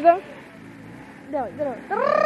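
A car engine running steadily at low revs, faint beneath nearby voices.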